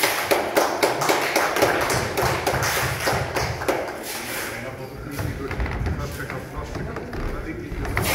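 Indistinct voices talking in a large gym hall, with a run of quick, sharp taps that is thickest in the first few seconds and some dull thumps later on.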